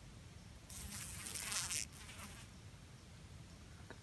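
Cicada killer wasps buzzing briefly, a rough, hissy buzz lasting about a second that starts just under a second in and trails off soon after.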